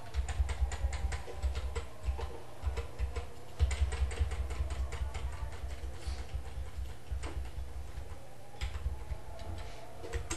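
Computer keyboard and mouse clicking in irregular runs of quick taps, with a low thudding under the clicks.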